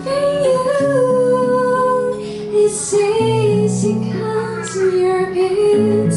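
A woman singing a melody with long held notes into a microphone, over plucked acoustic string accompaniment.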